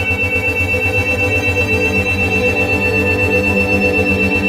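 Brainwave-entrainment audio: steady electronic tones pulsing rapidly and evenly as 8 Hz isochronic and monaural beats, over a sustained ambient synth drone.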